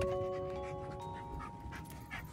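Soft background music of ringing glockenspiel-like notes, with a Bernese Mountain Dog panting quickly beneath it.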